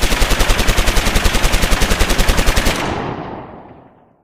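Rapid automatic gunfire: an unbroken burst of about a dozen shots a second for nearly three seconds, then dying away over the last second.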